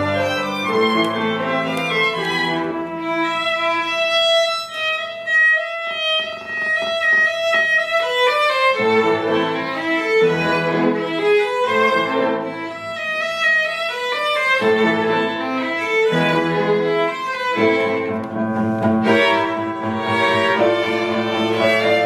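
Live chamber music: violins and other bowed strings playing a flowing melody over lower sustained notes, with piano accompaniment.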